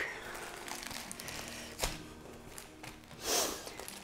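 Soft rustling of plastic-wrapped planner covers and notebooks being handled, with a light tap about two seconds in and a louder swish near the end.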